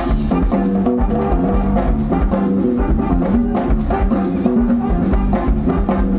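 Live band playing an instrumental number: electric bass guitar holding a low groove under hand-played congas and other percussion, with a steady, even beat.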